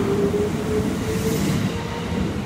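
Kintetsu 22600-series 'Ace' limited-express train accelerating away from a platform: its traction motors give a whine that climbs in pitch over the rumble of wheels on rail. The sound begins to fade near the end as the last car passes.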